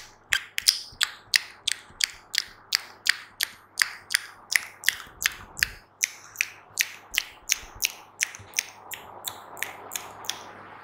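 Wet mouth clicks made close to a microphone, ASMR-style, in a steady fast rhythm of about three sharp clicks a second, a little fainter near the end.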